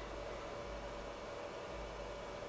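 Room tone: a faint steady hiss with a low hum underneath and a thin steady tone, and no distinct events.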